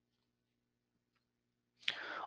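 Near silence: a pause in narration with only a faint steady low hum, and a man's voice just starting near the end.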